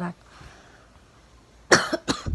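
A person's short cough close to the phone's microphone near the end, after a second or so of quiet room tone.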